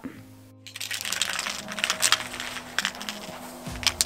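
Soft background music with held notes, the low note changing near the end.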